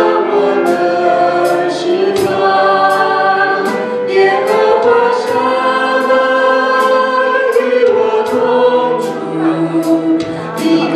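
Praise-team vocalists singing a worship song together in harmony through microphones, over band accompaniment with cymbal strikes keeping the beat.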